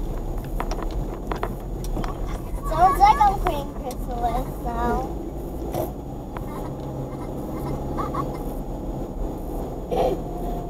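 Steady low engine and road hum inside a moving car's cabin. A high-pitched voice sounds briefly about three seconds in and again shortly after.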